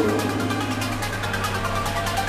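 Background music with a steady beat over a held bass note.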